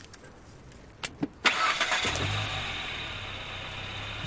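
A couple of faint clicks, then a car engine starts about a second and a half in and keeps running steadily.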